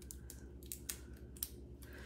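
Faint, irregular clicks and light rustling of a pencil, tape and a pipe-cleaner figure being handled at the counter.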